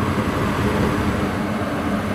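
Goodman gas furnace running with its three burners lit: a steady rush of flame and fan noise over a low, even hum.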